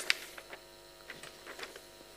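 Steady electrical hum in a lecture room, with a few faint short clicks and rustles from a sheet of paper notes being handled.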